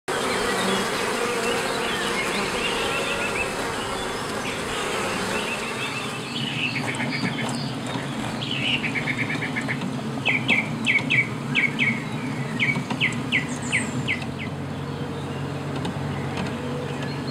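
Honeybee colony buzzing in a steady hum, with birds singing over it: quick trills through the first half, then a run of about a dozen short, sharp, falling chirps between about ten and fourteen seconds, the loudest sounds here.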